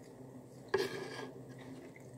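Knife and fork on a plate: one short scrape about three quarters of a second in, fading out over about half a second.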